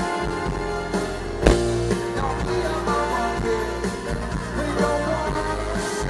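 Live band music playing steadily, with a single sharp hit about one and a half seconds in.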